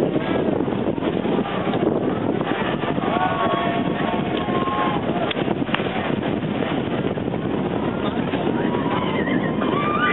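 Outdoor crowd noise: many voices talking and calling out over a steady rushing background, with a few raised voices in the middle.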